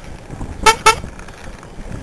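Two short toots of a vehicle horn in quick succession, over low rumble of wind and road.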